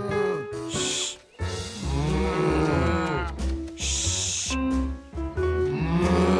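Cartoon cows mooing in long, drawn-out arching moos, two of them, over background music with a low pulsing bass.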